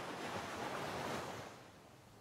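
Soft wash of ocean surf laid into the music track, fading out about one and a half seconds in to near silence.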